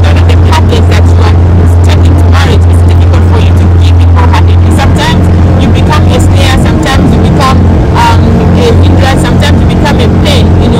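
Motorboat engine running at speed, a loud, steady low drone heard beneath a woman's talking.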